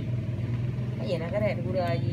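A steady low mechanical hum, with a person's voice talking briefly from about halfway through.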